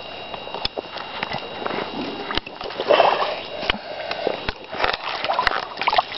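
Hands moving in shallow muddy water, with splashing and sloshing, scattered sharp clicks and knocks, and a louder patch of handling noise about halfway through.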